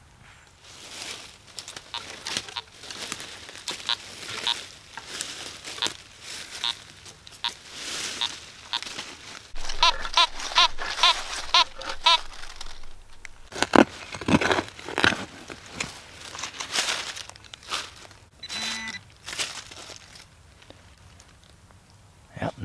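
Dry leaves and forest soil crunching and crinkling underfoot and under the detector's coil and hands. Around ten seconds in, a Fisher F19 metal detector gives a rapid series of short beeps as it passes over a buried target.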